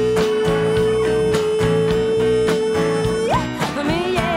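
Live band playing a bluesy song with drums, keys and guitars; a lead electric guitar holds one long steady note that slides sharply up and breaks off near the end.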